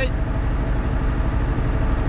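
Steady low drone of a Volvo 780 semi truck's Cummins ISX diesel engine at highway cruising speed, heard inside the cab with road and tyre noise.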